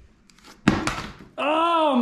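HJC i50 motocross helmet dropped onto a concrete garage floor, hitting with one sharp thunk about two-thirds of a second in. A man's voice starts to exclaim near the end.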